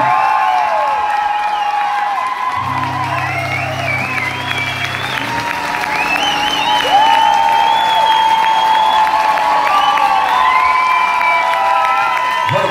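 Audience applauding and whistling as a singer is introduced, with several long, wavering whistles held over the clapping. A low note from the band's instruments is held for a couple of seconds early in the applause.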